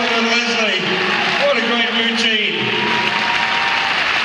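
Audience applauding, with a man's voice talking over it.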